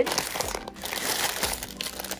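Plastic candy bags crinkling as a hand presses and moves them on a table.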